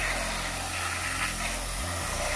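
Steady hiss of a fine water spray from a hose nozzle striking rubber floor mats, over a low steady hum.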